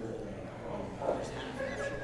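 Voices talking and laughing between songs, with a short, high laugh near the end.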